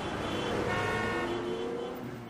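A sustained electronic tone from the outro's sound design: several steady pitches sound together over a low hum, swelling about a second in and fading toward the end.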